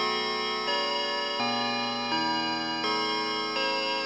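Dark ambient music: layered sustained pitched tones, the notes changing about every 0.7 seconds with a faint click at each change.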